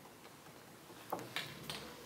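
Quiet room pause with three faint short ticks spaced roughly a third of a second apart, starting about a second in.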